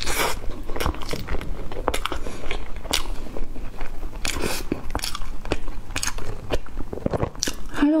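Close-miked chewing of a soft bread pastry with a crumbly coating and a mochi filling: a steady string of short mouth clicks and squelches.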